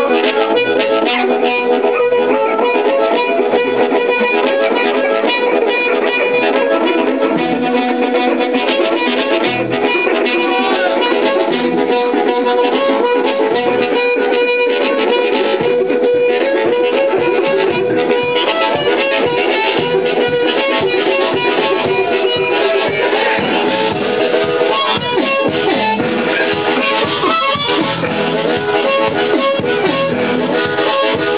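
Live band music: a harmonica belted out over electric guitar, bass guitar and drums keeping a steady beat.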